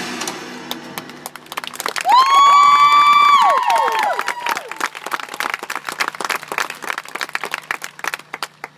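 Crowd applauding a high-school marching band's field show, with scattered hand claps after the band's last chord dies away at the start. About two seconds in, loud shrill whistles with sliding ends rise above the clapping for about a second and a half, then the claps thin out.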